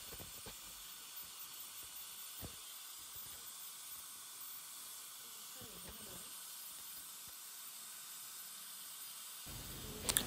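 Faint steady hiss, close to silence, with a couple of tiny soft ticks.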